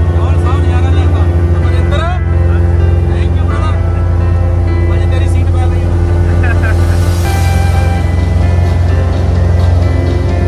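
Steady drone of a light aircraft's engine heard inside the cabin, with music and a voice laid over it.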